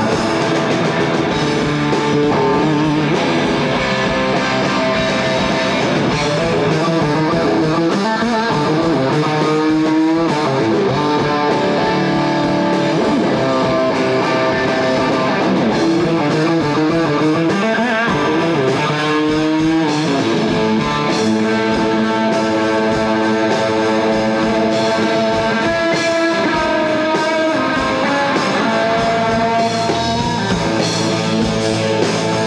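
Live hard rock band playing an instrumental passage: distorted electric guitar over drums, with the guitar sliding up and down in pitch a few times around the middle.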